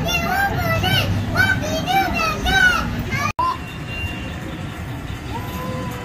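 A high, child-like voice in a sing-song run of rising-and-falling phrases for about three seconds. It cuts off suddenly and gives way to quieter amusement-arcade hubbub, with a steady electronic tone that drops to a lower pitch near the end.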